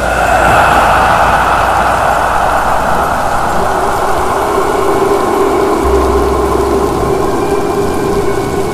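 Rainstorm sound effect: a loud, steady rushing noise that comes in suddenly at the start, with a low steady hum beneath.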